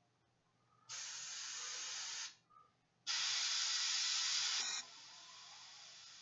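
Airbrush spraying paint in two bursts of hiss, the second louder and longer, then a fainter hiss of air running on near the end, as a pale red highlight goes onto the armour.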